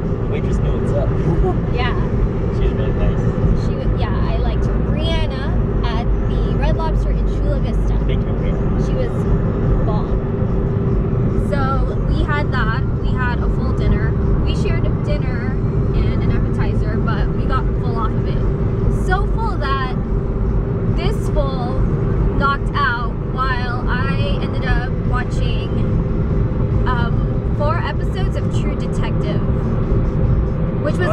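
Steady road and engine noise inside the cabin of a moving car, a constant low rumble with a hum, with people talking over it for most of the time.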